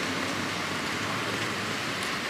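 Steady hiss of rain and passing traffic on a wet street, with no other events.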